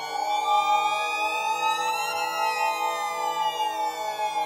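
Instrumental music: a steady held note, with a group of higher tones that slide slowly upward to about halfway through and then glide back down.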